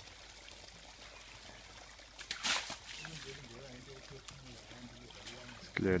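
Young bull African elephant splashing mud and water in a shallow mud wallow with its trunk and feet: a wet splash about two and a half seconds in, and trickling water.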